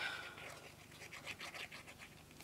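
Faint scratching as a glue bottle's nozzle is drawn across the back of a card tag, spreading liquid glue.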